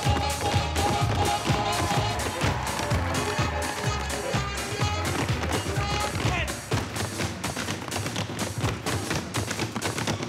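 Tap shoes striking hard plinths in a quick, steady rhythm as a troupe tap-dances in unison over a loud backing track.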